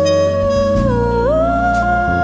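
Live band music: a single lead melody line holds a long note, dips briefly about a second in, then slides up to a higher held note over sustained low accompaniment.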